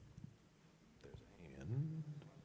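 A pause in a panel talk: low room tone with a few faint clicks about a second in, then a short, quiet voiced sound near the end, a hesitant start of speech.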